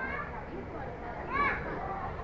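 Continuous background chatter of many voices, with one loud high-pitched call rising and falling about one and a half seconds in.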